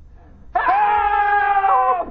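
A loud, long drawn-out shout held at a steady pitch for about a second and a half, starting about half a second in: a voice calling out for help.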